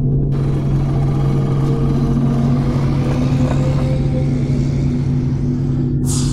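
Cartoon car-engine rumble sound effect, starting just after the beginning and running steadily for about six seconds over a low sustained drone.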